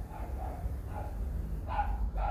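A dog barking in quick short barks, about three a second, over a steady low hum.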